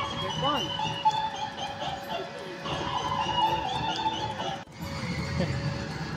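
Spooky recorded soundtrack of music and sound effects playing over loudspeakers at a haunted-house attraction, with a rising-and-falling cry about half a second in and voices mixed in. The sound breaks off abruptly about four and a half seconds in, then music and voices carry on.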